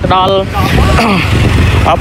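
Speech, a voice talking, with a low rumble underneath that grows strongest past the middle.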